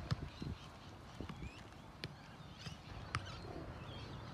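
A soccer ball being passed around on grass: a few sharp kicks on the ball, the clearest about two and three seconds in, with softer thuds between. Faint bird chirps come and go.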